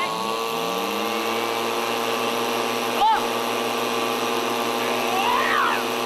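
A motor spins up to speed during the first second and then runs at a steady pitch, over the steady hiss of artificial rain spraying onto wet tarmac. Two brief voice cries cut in, one about halfway through and one near the end.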